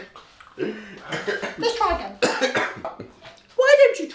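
People talking with their mouths full, muffled and broken up, with a cough a little over two seconds in.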